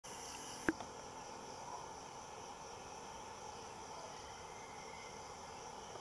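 Faint, steady chorus of insects, likely crickets, with one sharp click a little under a second in.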